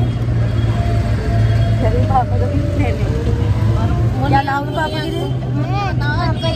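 Steady low rumble of a moving vehicle heard from inside, with short bits of voices about two seconds in and again near the end.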